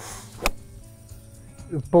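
A golf iron striking a ball off turf: one sharp, crisp click about half a second in.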